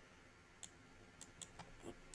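A few faint computer mouse clicks, about four or five and mostly in the second half, against near silence.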